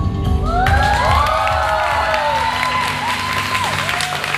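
Bass-heavy dance music drops away within the first second, and a small seated audience breaks into cheering, whoops and clapping.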